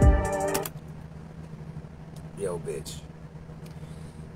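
An instrumental beat with heavy bass and rapid hi-hats playing, cut off suddenly about half a second in. A steady low hum remains after it, with a brief vocal sound about two and a half seconds in.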